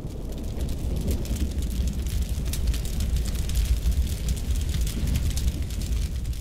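Fire sound effect: a steady low rumble with dense crackling throughout.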